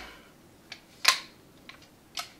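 A few light clicks and taps from a folded metal A-frame guitar stand being handled, with one sharper click about a second in.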